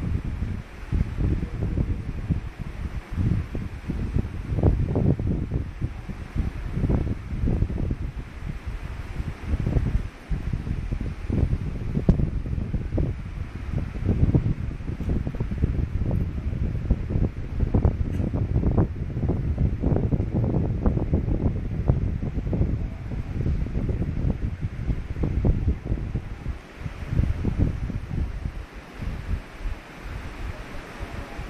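Irregular low rumbling buffets of air on the camera microphone, coming in uneven gusts throughout.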